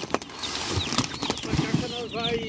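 Plastic fish-transport bag of water crinkling and rustling as it is gripped and lifted by hand, with a few sharp clicks.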